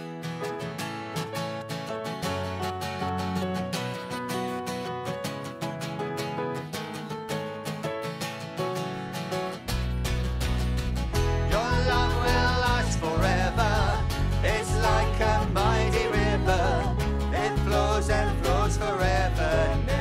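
Live worship band playing a song: acoustic guitar strumming with keyboard. A fuller low end with bass guitar comes in a little before halfway, and voices start singing soon after.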